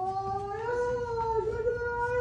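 One long, drawn-out, high-pitched scream from a person, rising slightly and held for about two seconds.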